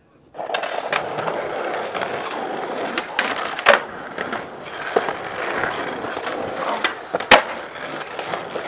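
Skateboard wheels rolling over rough concrete, starting just after the beginning, with several sharp clacks from the board; the loudest comes about seven seconds in.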